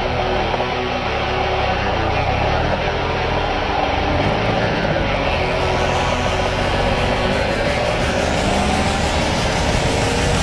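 Rock music starting, its treble held back at first and then opening up gradually over the second half, laid over a motorcycle engine running on the move.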